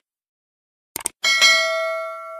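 A quick pair of mouse clicks about a second in, then a bell chime that rings on and slowly fades: a subscribe-button notification-bell sound effect.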